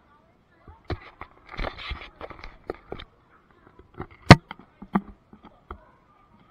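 Irregular knocks, clicks and rustles of an action camera being moved and handled, with one sharp knock about four seconds in that is the loudest sound.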